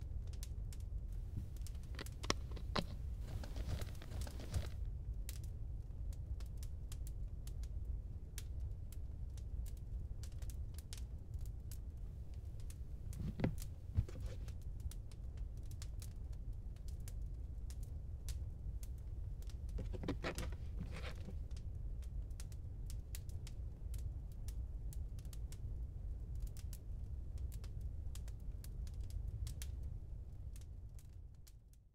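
Rustling, crinkling and light clicking of papers and small objects being handled, over a steady low rumble, with louder rustling a few seconds in, again about halfway and once more a little later.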